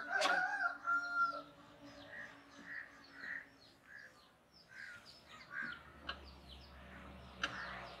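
Faint bird calls: one long held call in the first second and a half, then a series of short calls repeating a little under twice a second.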